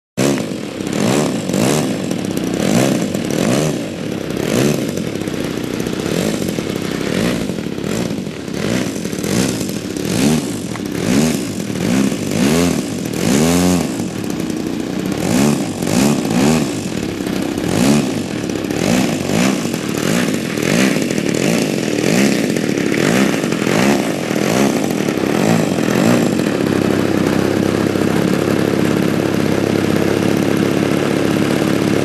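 RCGF 55 two-stroke gasoline engine of a giant-scale RC aerobatic plane, revving up and down over and over as the throttle is worked while the plane taxis on grass. It settles to a steady idle for the last few seconds.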